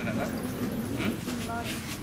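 Speech only: people talking in a room, with no other distinct sound standing out.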